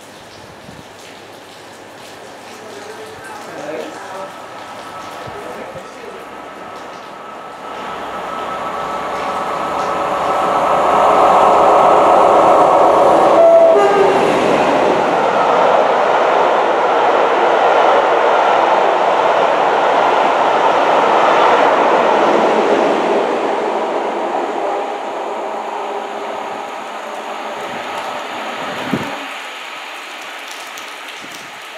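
Class 47 diesel locomotive 47840, with its Sulzer twin-bank twelve-cylinder engine, approaching and running through at speed at the head of a train of coaches. It is followed by a long steady rush of coach wheels on the rails that fades away near the end. A brief horn note sounds about halfway, as the locomotive goes by.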